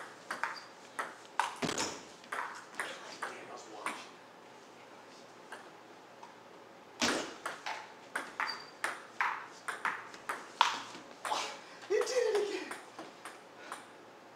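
Table tennis ball clicking off rubber-faced paddles and the table in two rallies, about three hits a second. There is a pause of about three seconds between the rallies.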